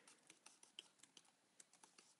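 Near silence, with a few faint, scattered clicks from working a computer's input devices.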